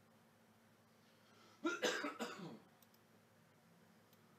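A person coughs once, a short burst of about a second a little past the middle, with a voiced tail that drops in pitch.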